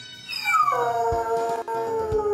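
A Dalmatian howling: one long howl that starts high, drops quickly in pitch, then holds a nearly steady note. Music with a beat plays underneath.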